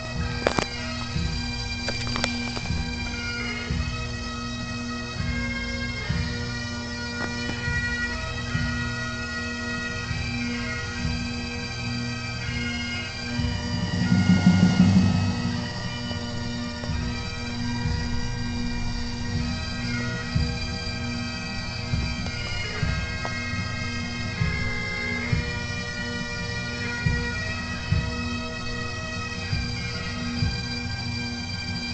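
Bagpipes playing a slow tune of held notes over a steady unbroken drone. Low thumps and rumble on the phone's microphone run under it, loudest about halfway through.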